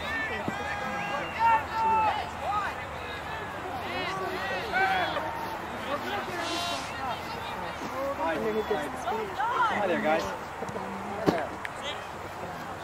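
Indistinct shouts and calls from players and spectators across an open soccer field throughout, with the thud of a soccer ball being kicked sharply near the end.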